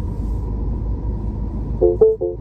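Low steady rumble inside the cabin of a 2013 Mini Cooper Countryman moving slowly into a parking spot. Near the end a car warning chime starts, short beeps repeating about three times a second.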